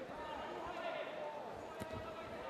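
Dull thuds of gloved punches, kicks and footwork in a kickboxing bout, with a sharper smack near the end as a kick lands, over voices calling out in the arena.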